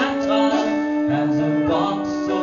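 Live band with a brass section playing an instrumental passage: long held notes that move to a new pitch about once a second.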